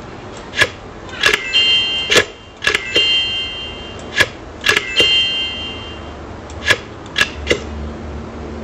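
About a dozen sharp clicks or knocks, irregularly spaced. Several are followed by a brief, high metallic ring lasting up to about a second.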